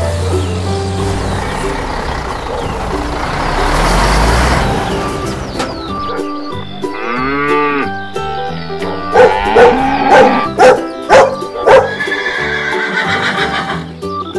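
Children's background music over farm sound effects. For the first few seconds a vehicle engine rumbles and swells. After that come animal calls, among them a horse whinnying several times.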